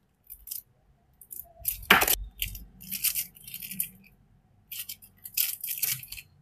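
Plastic wrapping crinkling and rustling in irregular bursts as small acrylic pieces are handled, with a sharp click about two seconds in.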